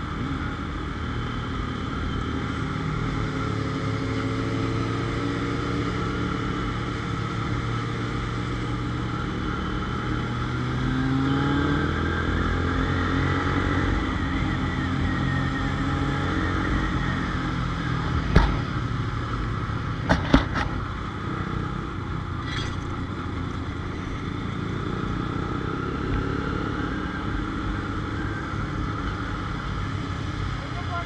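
Motorcycle engine running at road speed with road and wind noise on the moving bike; about a third of the way in the engine note rises as it speeds up. A few sharp knocks come a little past the middle.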